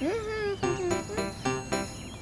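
Light children's background music: a gliding note at the start, then a melody of short, evenly spaced notes.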